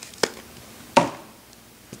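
Two sharp plastic clicks from handling clear clamshell wax-tart packs, one about a quarter second in and a louder one about a second in.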